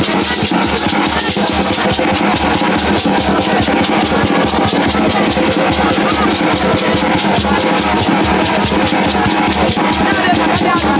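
Live West African percussion: a hand drum beating and beaded netted gourd rattles (shegbureh) shaken in a fast, steady rhythm, with hand-clapping.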